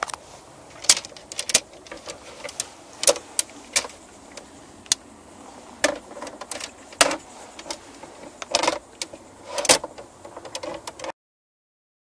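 Fiberglass awning rods with metal ferrules clicking and clattering as they are handled, a string of irregular sharp knocks and rattles that cuts off suddenly near the end.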